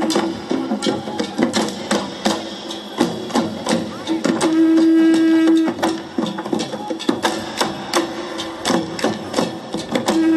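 Garo dama long drums beaten with hands in a rapid, driving rhythm for the Wangala dance. A long held note sounds over the drumming about halfway through.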